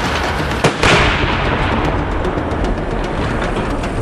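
A sharp rifle shot and a large explosion, the loudest about a second in, dying away over a couple of seconds, over background music.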